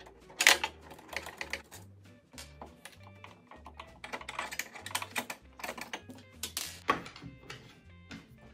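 Irregular small clicks and taps of a screwdriver and screws on the metal and plastic parts of a Singer Tradition sewing machine being taken apart. Soft background music with a low bass line runs underneath.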